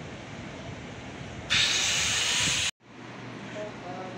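Steady street ambience, then a loud, even hiss that starts suddenly about one and a half seconds in and cuts off abruptly about a second later. A brief dropout follows, then quiet indoor room tone.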